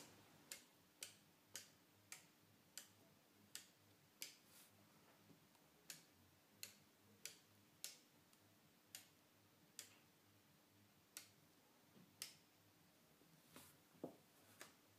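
Relays in a homebuilt relay computer's ALU releasing as the input bits are switched off: a series of single sharp clicks, about seventeen, spaced half a second to a second apart with a short pause around the middle. A faint steady hum lies underneath.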